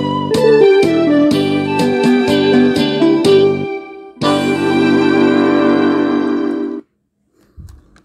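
Instrumental ending of a song's backing track: a keyboard melody steps downward over a steady beat and breaks off, then one final held chord sounds for about two and a half seconds and stops.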